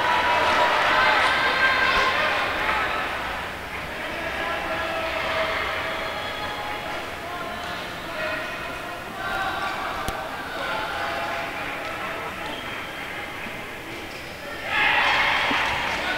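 Badminton hall ambience during a rally: a steady murmur of many voices in a large reverberant hall, with occasional sharp racket hits on the shuttlecock and footfalls on the court.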